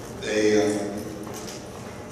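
A man speaking into a podium microphone, giving a lecture.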